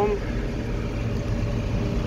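John Deere 4850 tractor's diesel engine running at a steady pace while the tractor is driven down the road, heard from inside the cab.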